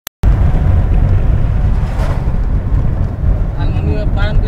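Steady low rumble of a moving road vehicle, with road and wind noise, heard from on board.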